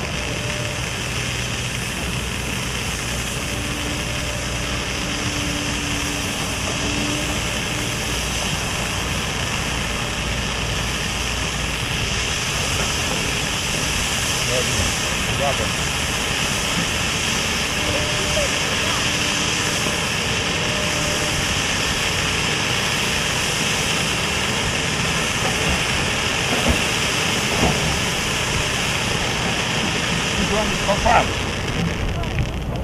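Lesli All Inclusive 120 firework fountain spraying sparks with a steady hiss, with a couple of sharp crackles near the end.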